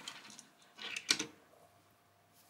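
Matchbox Datsun 280ZX die-cast cars being moved and set down by hand on a wooden tabletop: a few small clicks and rattles of metal and plastic on wood about a second in.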